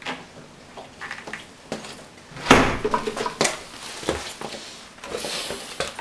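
Knocks, clicks and rustling as things are picked up, handled and set down. The loudest is a knock about two and a half seconds in.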